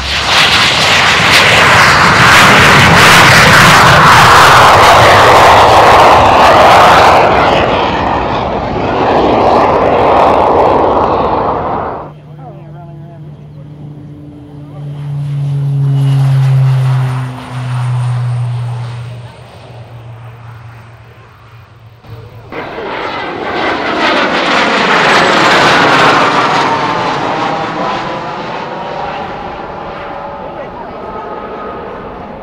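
BAC 167 Strikemaster's Rolls-Royce Viper turbojet at takeoff power, a loud roar for about the first twelve seconds. Then the roar cuts off and a twin-turboprop Beechcraft King Air is heard on its takeoff run with a lower, steady propeller drone. From about two-thirds of the way in, a jet passes overhead with a roar that swells and then fades.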